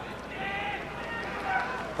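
Faint, distant voices over a steady low background hum of a large hall.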